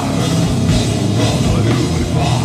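Heavy metal band playing live: distorted electric guitar, bass guitar and drum kit, loud and continuous.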